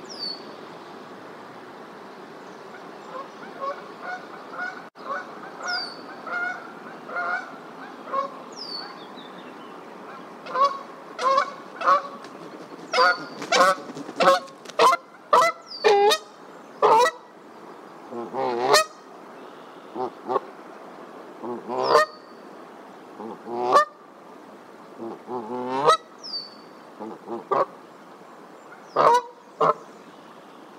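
Canada goose honking in a long series of calls. They are sparse and softer at first, then come thick and loud from about ten seconds in.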